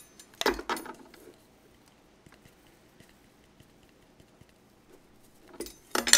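A measuring spoon clinking in a few quick, sharp clinks about half a second in and again near the end, with near quiet between.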